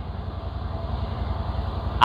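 A steady low rumble with a faint, even hiss above it.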